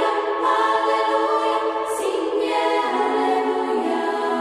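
Youth choir singing long held chords in several parts, with a brief sung 's' hiss about two seconds in and the lowest part stepping down to a lower note a little under three seconds in.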